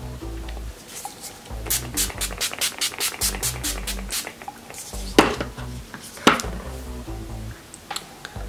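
Background music with a steady beat. Over it, about five seconds in and again about a second later, come two short hisses of Urban Decay Chill setting spray being misted onto the face.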